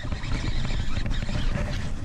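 Steady low rumbling of wind buffeting an action camera's microphone, with no distinct events.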